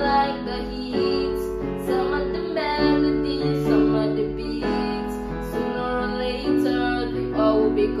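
Electronic keyboard playing slow sustained chords in a piano voice, changing about once a second, with a boy singing over them.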